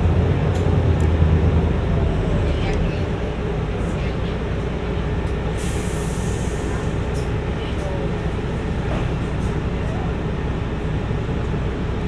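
Inside a Mercedes-Benz city bus: the engine drone falls away about three seconds in as the bus slows to a stop. A short burst of air hiss from the brakes follows midway, then the engine idles steadily.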